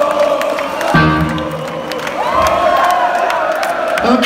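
Heavy-metal concert crowd cheering and chanting in a hall, with an amplified chord struck from the stage about a second in.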